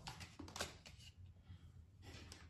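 Near silence: low room hum with a few faint clicks in the first second.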